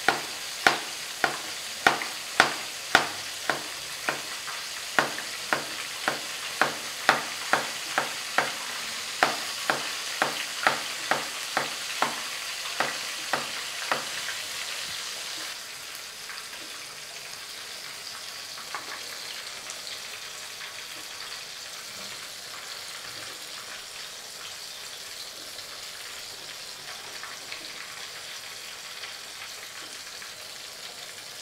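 Whole fish deep-frying in a pan of oil, a steady sizzle. For about the first half it is joined by sharp, evenly spaced taps about twice a second; after they stop only the sizzle continues.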